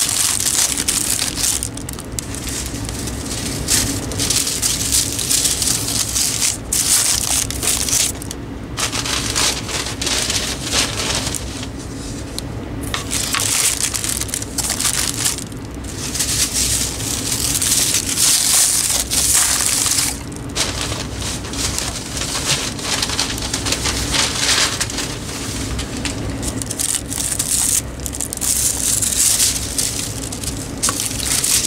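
Plastic wrap and packing paper crinkling and rustling in close handling, in uneven surges, as ceiling fan blades are packed into a cardboard box. A steady low hum runs underneath.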